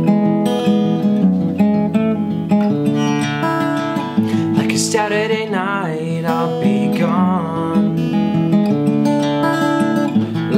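Small-bodied acoustic guitar strummed in a steady rhythm of chords, with a voice joining in about halfway.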